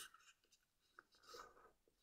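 Near silence, with a faint tick about halfway through and a brief soft rustle just after it as a sheet of red origami paper is pressed into a fold by hand.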